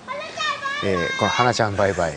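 Voices talking, with no music: a high-pitched voice first, then a man speaking in short phrases.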